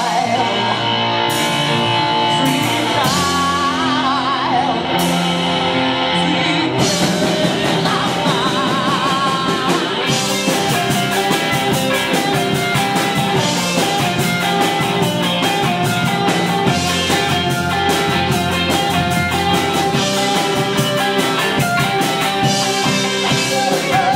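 Live rock band playing: electric guitars, bass and drums, with a singer. The band plays sparsely with a few separate crashes at first, fills out about seven seconds in, and from about ten seconds in the drums drive a steady fast beat.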